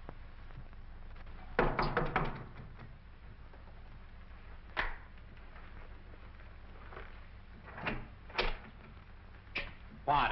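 A door opening and shutting, heard as a cluster of knocks and clatter about a second and a half in, then a few single knocks spaced a second or more apart, over the steady hum and hiss of an old film soundtrack.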